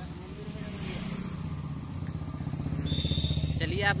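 Motorcycle engine running close by, getting louder toward the end.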